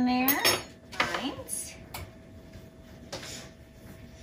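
A kitchen knife clicking and scraping against a metal baking sheet a few times as crosses are scored into flat rounds of bread dough.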